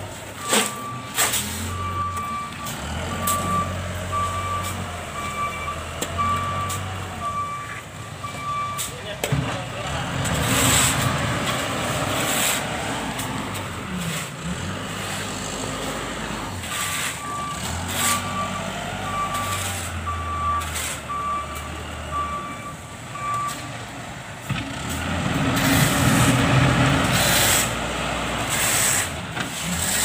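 Loader working with its reversing alarm beeping about one and a half times a second, in two runs of several seconds each. The diesel engine runs underneath, with scattered knocks and a louder stretch near the end.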